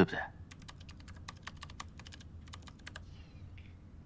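Typing on a computer keyboard: a quick, irregular run of keystroke clicks lasting about two and a half seconds.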